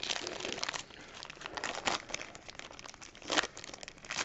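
Foil wrapper of a Panini Chronicles basketball card pack crinkling and tearing as it is opened by hand, in irregular rustling bursts, with the loudest crackle about three and a half seconds in.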